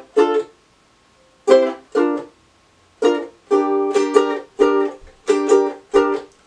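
Ukulele playing a chord intro. Single chords are struck once and stopped at once, with short silences between them. From about three seconds in comes a down-up strumming pattern on G minor.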